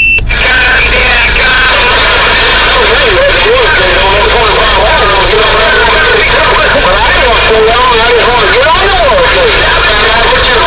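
Big Rig Series CB radio on channel 11 (27.085 MHz) receiving distant stations: garbled, warbling voices over steady static, too distorted for words to come through, the way long-distance skip signals sound on the band. A brief dropout with clicks comes right at the start.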